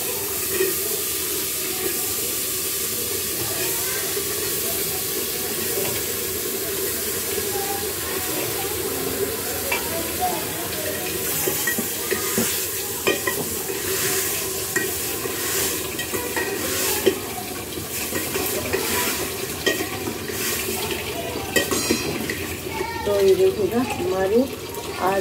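Potato and bottle-gourd pieces frying with a steady sizzle in a metal pot. A metal spoon stirs them, scraping and clinking against the pot, most often in the second half.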